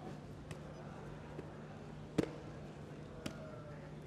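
Kicks striking electronic taekwondo body protectors in the pre-bout sensor test: one sharp thud about two seconds in, the loudest sound, and a fainter one about a second later, delivered with a lot of power. A steady low arena hum runs underneath.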